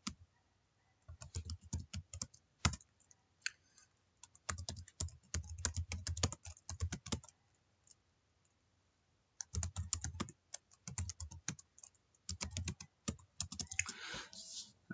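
Typing on a computer keyboard: quick runs of keystrokes in three groups, broken by short pauses, the longest of about two seconds just past the middle.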